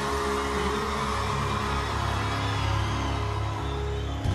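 Live rock band music: a steady held chord over a strong low bass note.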